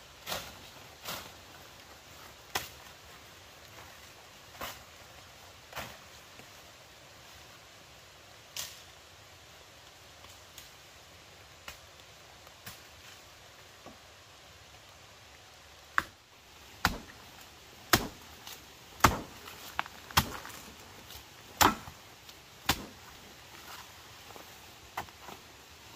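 Sharp chopping strokes of a blade hacking at wood: a few scattered, softer blows at first, then louder, harder strokes about once a second in the last third.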